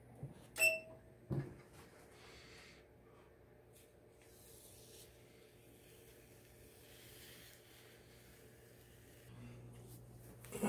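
MPress 15x15 clamshell heat press being opened: a sharp metallic clack with a brief ring as the handle releases, then a second thump as the platen swings up. Faint paper rustling follows as the transfer sheet is handled on the shirt.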